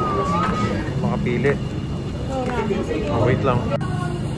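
Indistinct voices talking, with a melody from background music trailing off in the first second.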